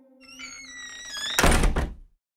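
Logo-transition sound effects: a soft tone glides slowly downward, then a loud noisy thunk about one and a half seconds in lasts half a second and stops abruptly.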